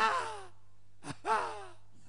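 A man's voice giving two short, breathy exclamations with falling pitch, about a second apart, wordless sighs or laughter.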